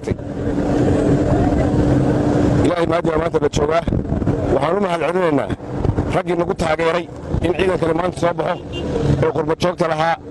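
A steady low rumble with a constant hum for about the first three seconds, then people's voices talking over the continuing background rumble.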